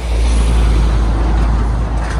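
Lorry passing close by on the road: a loud, low rumble that starts suddenly and eases slightly near the end.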